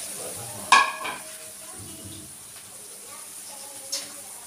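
Flour-coated milkfish frying in hot oil in a pan on a portable gas stove, a steady sizzle. About a second in comes a sharp, ringing clink of a ceramic plate being set down on the counter, with a smaller knock just after.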